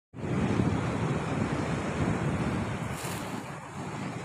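Sea waves washing against shoreline rocks, with wind buffeting the microphone.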